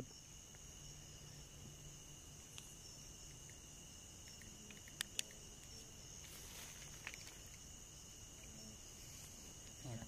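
Faint, steady chorus of night insects, a continuous high chirring. Two sharp clicks come close together about five seconds in.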